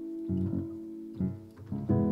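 Piano chords played with both hands, bass notes under right-hand chords, a few notes struck in turn and left to ring.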